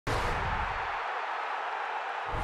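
Broadcast intro sound effect for an animated title graphic: a sudden hit that opens into a sustained noisy rush, its low rumble dropping away about a second in while the hiss carries on.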